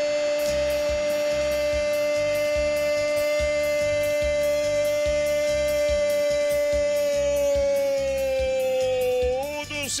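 Commentator's long drawn-out goal cry, "gooool", held on one shouted note for about eleven seconds, wavering and falling in pitch near the end. A steady musical beat runs underneath.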